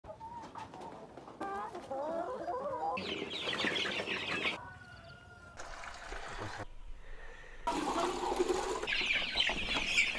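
Chickens clucking and calling, heard in a run of short clips that cut abruptly from one to the next every second or two.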